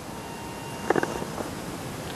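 Faint, thin, steady squeal of a bicycle's brakes, lasting about a second, over a steady hiss. A brief louder sound comes about a second in.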